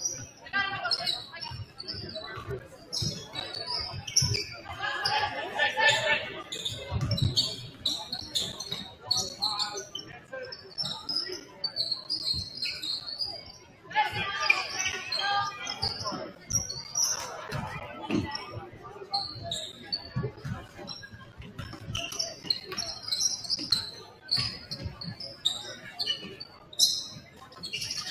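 A basketball dribbling and bouncing on a hardwood gym floor in a reverberant gym, with scattered voices of players and spectators calling out. The knocks come irregularly throughout, and the voices rise twice.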